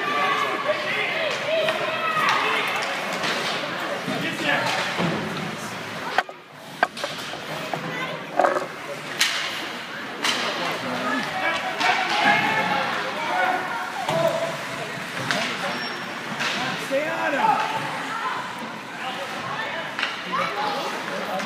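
Spectators in a hockey rink talking and calling out, many voices at once, with a few sharp knocks of sticks and puck about six to ten seconds in.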